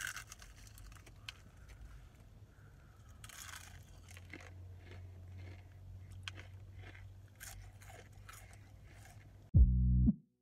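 Crispy Popeyes fried chicken crunching in the mouth: a crackly bite, then chewing with scattered crunches over a steady low hum. Just before the end a loud burst of intro music cuts in.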